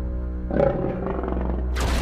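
Logo intro music over a steady low drone, with a roaring sound effect about half a second in and a sudden burst of noise near the end.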